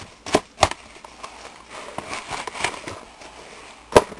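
A metal spoon chopping and scraping through powdered detergent ingredients to break up clumped borax: crunchy scraping with two sharp knocks in the first second and another at the very end.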